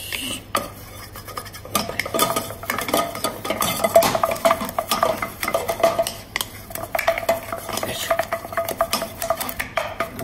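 Wooden spatula beating choux paste in a stainless-steel saucepan: rapid, irregular scraping and knocking of wood against the pan as the thick dough is worked until it comes away from the sides.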